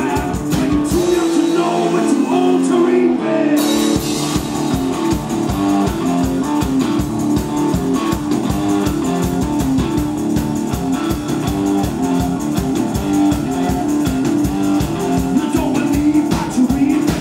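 Live blues-rock duo playing an instrumental stretch: an electric guitar riff over a drum kit. The low end drops away for about two seconds near the start, then everything comes back in with a loud hit.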